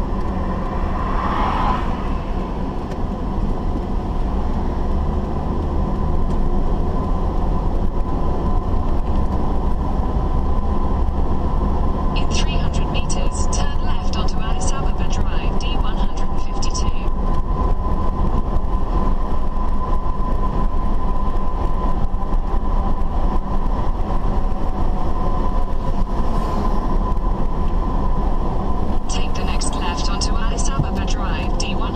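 Steady low road and engine rumble inside a moving car's cabin, picked up by a dashcam behind the windscreen. A faint steady whine runs through it, and rapid high ticking comes in for about five seconds from about twelve seconds in, and again near the end.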